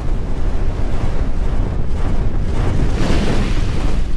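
Cinematic logo-intro sound effect: a deep, noisy rumble like rushing wind, swelling about three seconds in.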